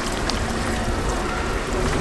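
Pulpulak drinking fountain: thin water jets splashing steadily into stone basins as she drinks, over a low, steady rumble.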